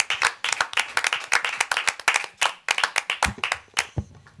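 A small group applauding, steady hand claps that thin out and stop near the end.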